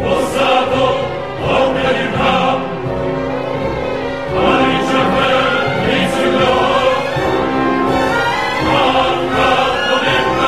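Operatic chorus singing held chords with orchestral accompaniment.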